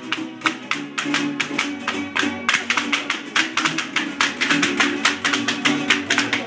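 Lively folk music led by plucked string instruments, with a fast, even clatter of dancers' zapateado footwork, hard shoe soles stamping on concrete about five or six times a second.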